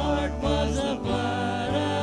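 Live worship band playing a song: several voices singing together over a strummed acoustic guitar and an electric bass.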